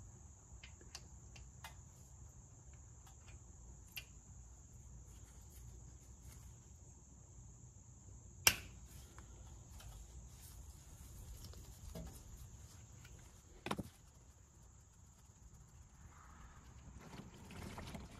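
Quiet, scattered small clicks of a 5 mm hex-bit tool working loose the second oil drain plug under a motorcycle engine, with a sharper click about eight and a half seconds in and another near fourteen seconds, over a faint steady hiss.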